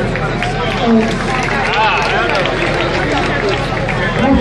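Voices of people talking outdoors, with the general chatter of a street gathering.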